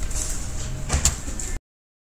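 Steady room noise with two quick computer mouse clicks close together about a second in, as the screen recording is stopped. The sound then cuts off abruptly.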